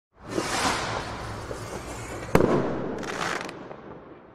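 Channel logo intro sound effect in the style of a firework rocket: a rushing noise that starts almost at once and slowly fades, one sharp bang about two and a half seconds in, then a short high hiss, all dying away.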